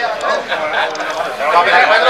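Speech: people talking, the words unclear.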